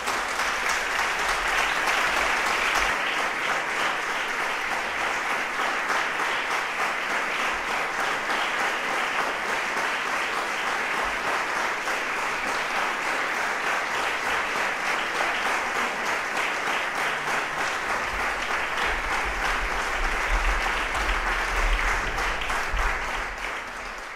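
Audience applauding: steady, continuous clapping from a crowd at the close of a live string-quartet performance, tailing off at the very end.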